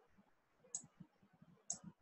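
Two faint computer mouse clicks about a second apart, over near silence.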